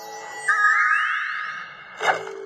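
Cartoon closing music sting played through a device's speaker: held tones, then about half a second in a louder entry with a synth glide that sweeps upward for about a second.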